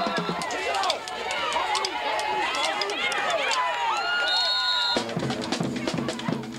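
Football crowd in the stands, many voices shouting and cheering over one another. About five seconds in, band music with a steady drum beat starts abruptly.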